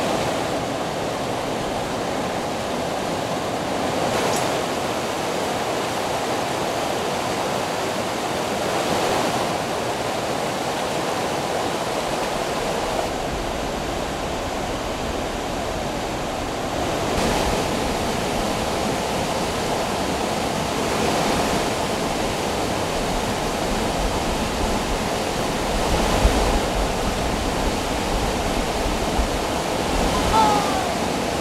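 Fast river water rushing over boulders and spilling from an intake gate, a steady rush. A little before halfway a deeper rumble joins underneath.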